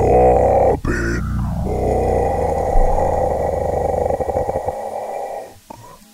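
A loud, rough growl that starts suddenly with a bending pitch, holds for about five seconds and fades out near the end.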